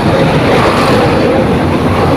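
Steady drone of a motor vehicle engine running, with a faint held tone under a broad noise.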